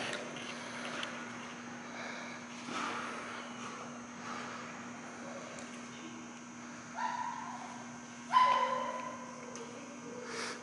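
A dog giving two high-pitched yelps, about seven and eight and a half seconds in. The second is louder and longer, and drops in pitch as it fades.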